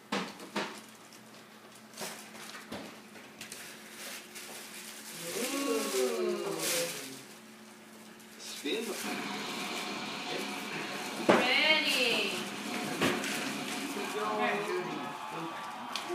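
Wrapping paper and tissue paper rustling and crinkling as a present is unwrapped, with short clicks early on and women's voices talking over the rustling in the second half.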